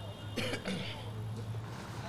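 A person giving one short cough about half a second in, over a steady low hum.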